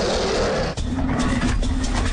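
A loud roar, the sound effect given to an animated dinosaur, which cuts off about three-quarters of a second in and gives way to a low steady tone.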